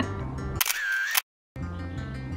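Background music with a steady bass beat; about half a second in, a loud phone camera shutter sound cuts across it, followed by a moment of dead silence before the music comes back.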